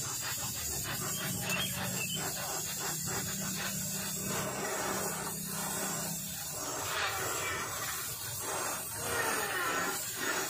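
Gas torch hissing steadily as it heats metal on a small generator engine, with scraping and rubbing of metal on metal. A low hum underneath fades out about two thirds of the way through.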